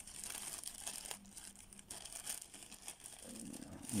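Thin clear plastic bag crinkling faintly as a hand crumples and handles it, in irregular rustles and crackles.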